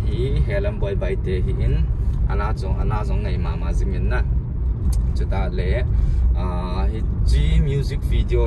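Steady low road and engine rumble inside a moving car's cabin, with a man talking over it throughout.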